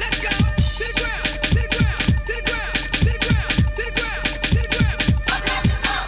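Hip hop DJ mix: quick back-and-forth turntable scratches over a beat with a deep kick drum about twice a second.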